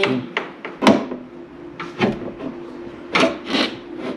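Irregular sharp knocks and scrapes of metal hardware being handled as an inverter is fastened to steel strut channel, over a faint steady hum.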